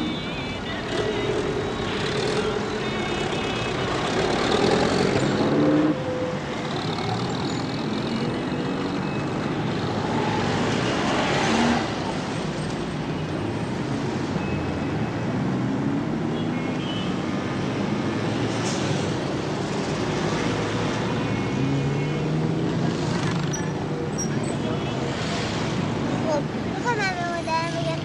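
Busy city street traffic: car and truck engines running in a continuous din, with voices mixed in.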